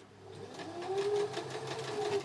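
Domestic electric sewing machine stitching a seam through dress fabric: the motor starts up and builds over the first second to a steady hum with rapid, even needle strokes.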